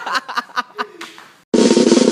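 Snare drum roll sound effect: a loud, fast run of strikes that starts abruptly about a second and a half in, after a moment of chatter.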